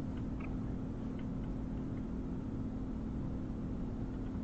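Steady low electrical hum and hiss of a Ring indoor camera's audio feed, with a few faint short ticks.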